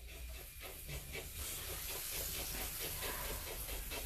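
Red silicone spatula stirring a thick cake batter in a bowl: faint, soft scraping strokes a few times a second over a steady hiss.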